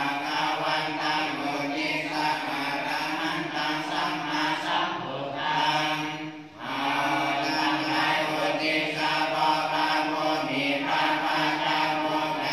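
Theravada Buddhist monks' evening chanting: a group reciting together in unison on one steady droning pitch, with a brief pause for breath about halfway through.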